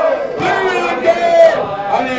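A room of men singing a song's chorus loudly together, holding long notes in a ragged group sing-along.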